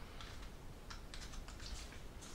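Faint, scattered light clicks and taps of fingers handling a small laser-cut wood model part and tiny plastic window castings.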